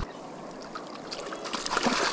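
Shallow stream water running and trickling close by, a steady even hiss.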